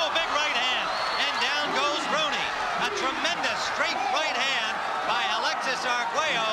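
Boxing arena crowd suddenly erupting into loud shouting and cheering, many voices yelling at once, in reaction to a knockdown.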